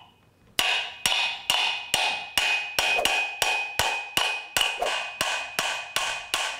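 Ball-peen hammer striking the end of a Scout II blower motor's shaft in a steady series of blows, about two a second, to knock off a steel blower cage that has stuck on the shaft. Each blow leaves a high metallic ring that hangs on between strikes.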